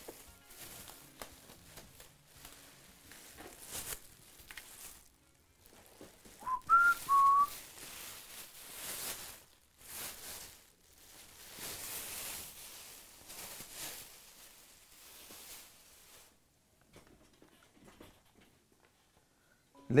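Plastic bag crinkling and rustling in bursts as an electric guitar is pulled out of its wrapping. About six seconds in, a short two-note whistle sounds, rising then settling on a slightly lower held note.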